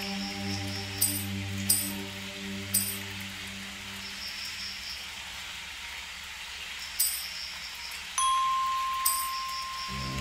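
Ambient electronic background music: a low held chord that fades away over about five seconds, scattered light high chime strikes, and a soft rain-like hiss underneath. A steady high tone comes in about eight seconds in.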